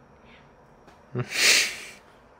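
A short spoken "yeah" followed by a loud, breathy burst of air about half a second long, like a sharp exhale or snort-laugh through the nose.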